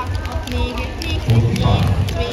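A skipping rope rapidly and steadily tapping against a sports-hall floor during speed skipping, with a louder burst of low sound about one and a half seconds in.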